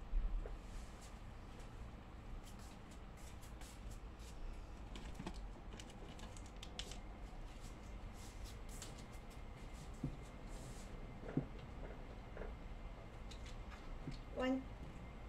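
Faint scattered clicks and light taps of small objects handled on a wooden table, opening with a low thump.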